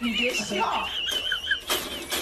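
Dog giving a high, wavering squealing whine for about a second and a half, with lower vocal sounds and a few knocks around it.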